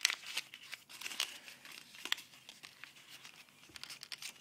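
Folded paper crinkling and rustling in the fingers as an origami flap is pressed and pushed in, in short irregular crackles.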